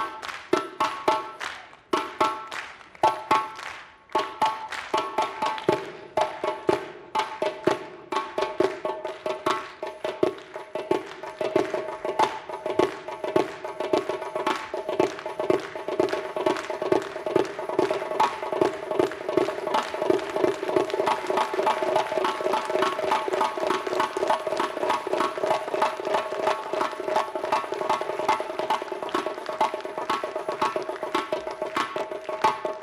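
Solo frame drum played with the hands and fingers. A few separate strokes, each dying away, open the passage; from about four seconds in they run together into a fast, unbroken roll that grows louder and denser.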